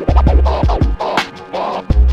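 Turntable scratching: a vinyl record pushed back and forth by hand, making quick rising and falling scratches over a hip hop beat with a deep bass note at the start and again near the end.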